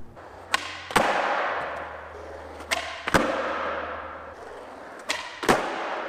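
Skateboard tricks on a concrete floor, three times over: a sharp tail pop, a second clack under half a second later as the board lands, then the wheels rolling away and fading.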